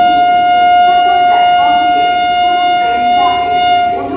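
WAP-7 electric locomotive sounding one long, steady horn blast as the express approaches. The blast cuts off near the end.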